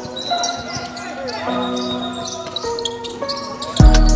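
Background music with held melodic notes changing about once a second, then a heavy bass beat coming in near the end.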